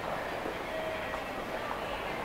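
Steady background noise of a large indoor public concourse: a constant, even hubbub with faint distant voices mixed in.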